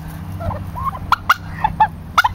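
White domestic turkeys calling, with a run of short, sharp notes from about a second in.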